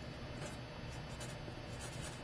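Felt-tip marker writing on paper: faint, even rubbing of the tip across the sheet as a word is written out.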